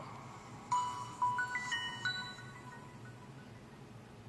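Samsung Galaxy S2 start-up chime from the phone's loudspeaker as it boots: a short run of clear notes stepping upward in pitch, starting just under a second in and fading away over the next two seconds.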